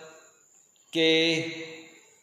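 A man's voice saying one drawn-out syllable, the letter "K", about a second in, after a near-silent pause.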